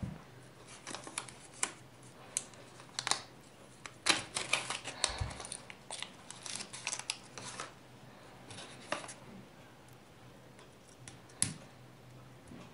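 A small clear plastic bag rustling and crinkling as it is opened by hand to get out a small hex key, with scattered light clicks and taps. The handling sounds are busiest in the middle and die away after about nine seconds.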